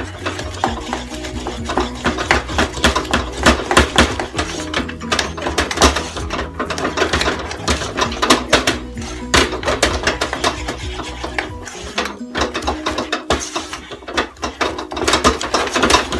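Wooden spoon beating thick churros dough in a small nonstick saucepan: rapid, irregular knocking and scraping against the pan as the flour paste is worked until it comes away from the bottom of the pan.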